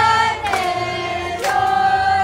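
A group of people singing a birthday song together, holding long notes that step down about half a second in and up again near the end.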